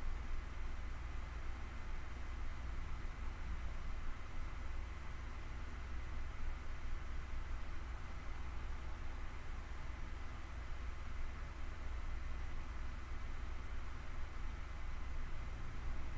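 Steady low hum with a faint hiss of background noise and no distinct event.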